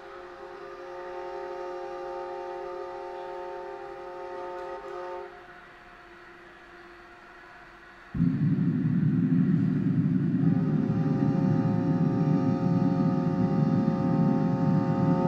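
A sustained, steady pitched drone fades out about five seconds in. About eight seconds in, a loud slab of low noise cuts in abruptly and continues, and the drone returns on top of it. This is contemporary music for violin with amplified electronic playback.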